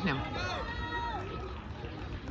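Faint background voices of spectators talking over a steady low rumble.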